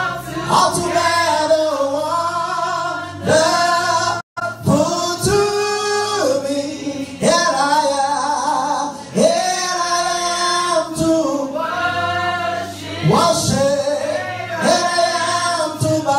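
Gospel worship singing: a man's voice through a handheld microphone, in long held notes that slide between pitches, with a brief dropout about four seconds in.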